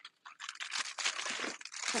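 Packaging crinkling as it is handled: a dense, crackly rustle of many small ticks that starts about a third of a second in.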